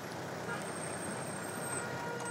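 Steady street traffic noise of cars on a busy road, with a thin high whine running through most of it.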